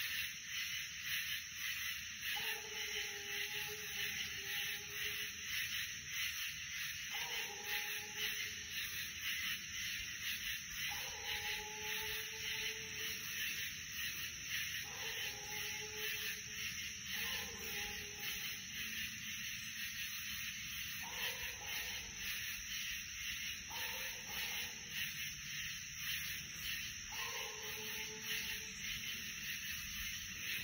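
Redbone coonhound bawling at the tree, faint and distant: long drawn-out calls of one to four seconds, repeating about every three to four seconds, the sign of a dog that has treed a raccoon. A steady, finely pulsing high hiss runs underneath.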